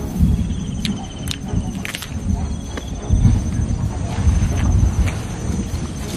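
A person chewing a mouthful of ripe guava close to the microphone, with irregular soft low thumps and a few sharp clicks, while a steady high insect trill runs behind.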